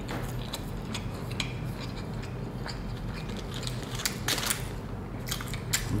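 A person chewing a mouthful of McDonald's triple cheeseburger with the mouth closed: soft, scattered wet clicks and smacks, a few of them stronger about four and five seconds in.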